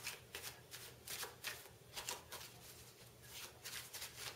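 A deck of playing cards being shuffled by hand: a quiet, quick run of soft flicks as the cards slide off one another.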